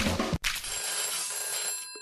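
Background music cuts off suddenly just after the start. A high, steady, shimmering metallic ring follows for about a second and a half as a sound effect.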